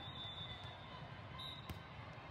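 Faint, steady murmur of a large indoor hall with a single sharp thud of a volleyball near the end: a ball being struck or bounced.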